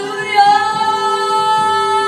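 A woman singing live, stepping up to a higher note about half a second in and holding it, over a steady sustained accompaniment.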